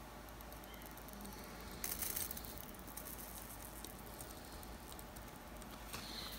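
Faint crackle and sizzle as a broad chisel-tip soldering iron heats a fluxed solder joint on a drone flight-controller pad. It grows a little louder about two seconds in.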